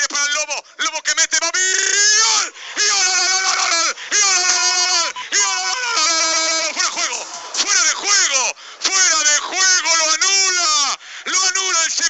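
A Spanish football commentator's excited goal call: a man shouting long, drawn-out cries one after another, each held for a second or more with the pitch rising and falling.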